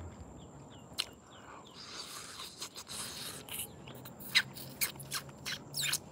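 Quiet mouth sounds of someone biting and chewing a piece of fruit, with sharp smacks and clicks in the second half. Faint bird chirps sound in the background about a second in.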